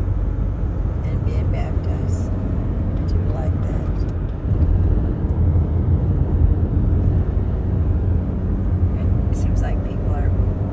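Steady road and engine noise inside a car cabin at highway speed, a low rumble that gets a little louder about halfway through.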